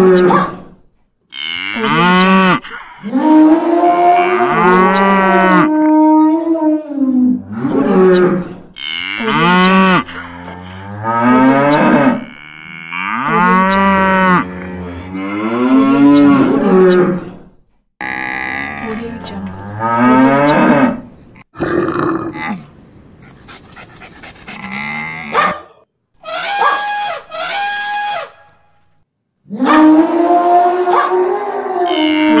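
Cattle mooing over and over: about a dozen calls, each a second or two long, rising and falling in pitch, with short gaps between them.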